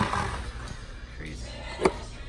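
Handling noise of a Onewheel wheel being lifted and turned over, then a single dull thump near the end as the tyre is set down on a rubber floor mat.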